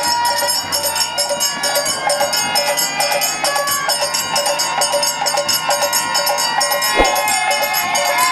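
Bengali devotional kirtan music: a harmonium sounds steady chords under a bamboo flute melody, with a khol drum and small brass hand cymbals (kartal) ringing throughout. There is one sharp strike about seven seconds in.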